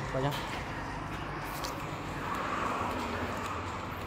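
A car's boot lid being unlatched and opened: a few light clicks in the first two seconds amid a low, steady rustle.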